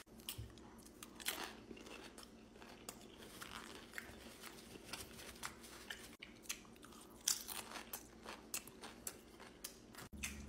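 Close-miked chewing of a burrito bowl eaten with Doritos tortilla chips: irregular crunches and wet mouth clicks, with a few louder crunches scattered through.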